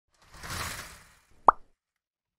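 Logo-intro sound effects: a short whoosh that swells and fades, then a single sharp cartoon pop about a second and a half in, the loudest sound.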